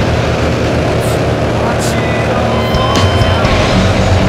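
Loud steady engine and propeller drone of a skydiving jump plane, with wind rushing in through its open door.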